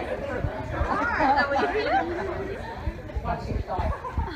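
Group chatter in a large hall: several people talking over each other, busiest about a second in, with a laugh near the end. Short low thuds run underneath.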